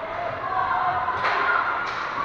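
Ice hockey game in an echoing arena: voices calling out across the rink, with two sharp clacks of stick and puck, one past the middle and one near the end.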